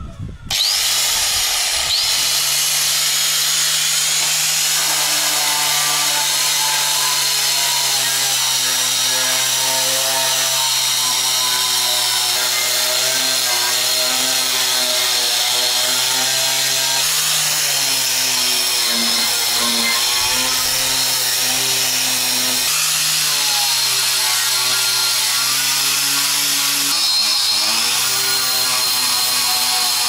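Electric angle grinder with an abrasive disc grinding rust off a steel plate. The motor runs steadily under load over a harsh grinding hiss, and its pitch sags briefly a few times as the disc is pressed harder into the metal.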